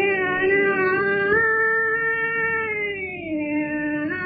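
A woman singing a Hindustani raga in long held notes that slide slowly between pitches, stepping up slightly after about a second and dropping to a lower note near the end.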